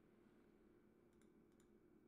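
Near silence: room tone with a faint steady hum and a few faint clicks between one and two seconds in.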